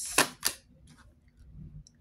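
A tarot card being laid down on a wooden table: two short clicks about a quarter of a second apart near the start, then quiet.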